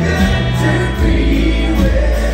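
Live country-rock band playing electric guitars, electric bass and mandolin, with harmony vocals singing over them.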